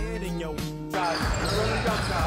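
Background music ending about a second in, then live basketball game sound: a ball dribbled on a hardwood gym floor, with players' voices.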